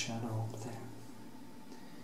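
A man's low voice, a drawn-out murmur or hum lasting about the first second, then quiet room tone.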